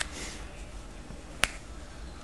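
A single sharp click about a second and a half in as a small neck knife is drawn out of its moulded Kydex sheath, with faint handling rustle before it.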